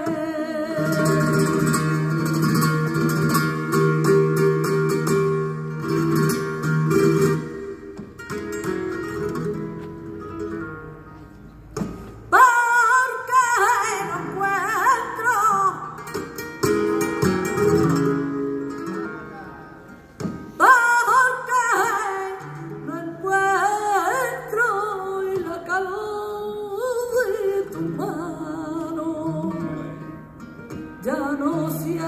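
Live flamenco seguiriya: a woman singing cante with flamenco guitar accompaniment. Her long held notes give way to phrases with wavering, ornamented pitch. The music drops quieter twice, and each time a new phrase comes in sharply, about twelve and twenty seconds in.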